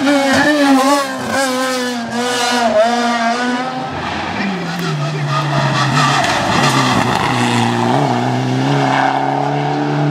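Rally car engines at a bend. For the first four seconds a Peugeot 206 rally car revs hard, its pitch dipping briefly several times as it lifts off and changes gear. From about four seconds in, a Mitsubishi Lancer Evolution's engine is heard at lower, steadier revs as it approaches.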